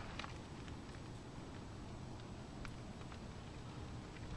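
Faint, steady background noise with a few soft, sharp clicks, two of them close together near the end.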